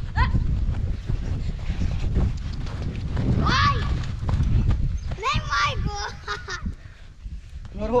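Boys' wordless yells, a short falling one about three and a half seconds in and a longer, wavering one a couple of seconds later. Underneath is a heavy low rumble of wind on the microphone and feet scuffing and dragging through loose sand as a boy is pulled along on a rope.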